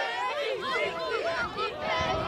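Several voices calling and shouting over one another, with no single clear line of speech.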